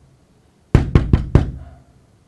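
Knocking on a wooden door: four quick, evenly spaced raps starting just under a second in.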